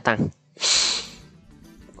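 A man's sharp breath drawn through the nose, a short airy sniff about half a second long, just after a spoken word, then fading out.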